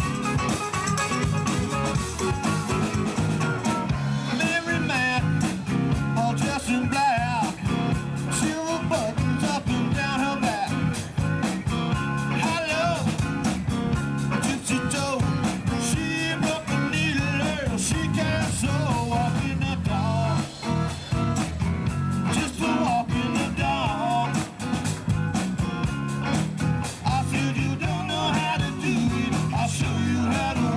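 Live blues-rock band playing: electric guitars, bass and drums with a wavering lead line over the top.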